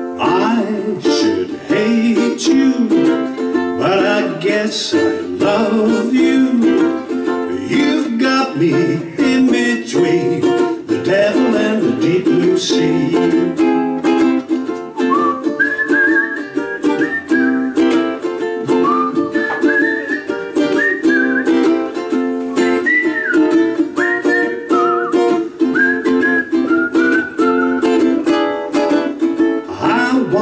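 Instrumental break on a strummed string instrument, with a whistled melody carried over the chords through the second half.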